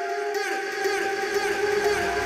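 Hip-hop backing track in an intro passage with no beat yet: sustained tones with repeated falling sweeps, and a low bass swell building near the end.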